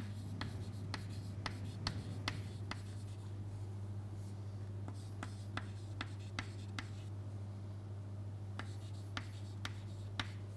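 Chalk writing on a chalkboard: an irregular run of light taps and short strokes, a few a second with brief pauses between words. A steady low hum runs underneath.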